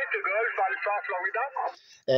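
A calling ham station's voice received over single-sideband on the 40 m band, coming from the speaker of a Yaesu FT-817, thin and narrow like radio speech. It stops shortly before the end.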